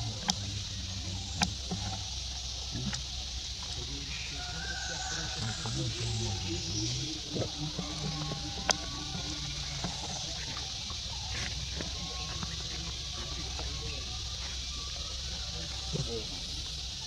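Outdoor ambience with indistinct voices under a steady high hiss. There are a few sharp clicks, one about a second and a half in and one in the latter half.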